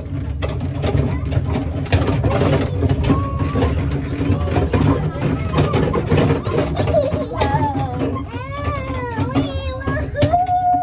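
Miniature passenger train ride running bumpily: a steady low rumble with frequent knocks and jolts from the carriage. A young child's voice rises and falls in excited squeals and calls, strongest in the last couple of seconds.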